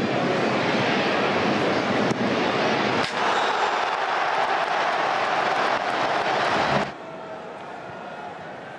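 Football stadium crowd noise swelling into a loud cheer about three seconds in, at an attack in front of goal, then cutting off suddenly near the end.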